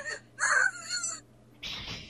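A single harsh, raspy vocal cry lasting under a second, followed near the end by a short hiss.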